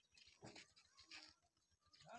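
Near silence, with two faint, short animal sounds about half a second and a second in.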